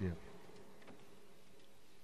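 A man's last spoken word dying away in a large cathedral's reverberation, followed by a pause of faint, steady room noise.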